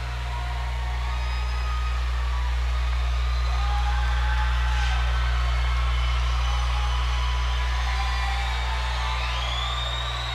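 A steady deep electronic drone over a concert PA, swelling gently and easing off, with faint wailing tones rising and falling above it.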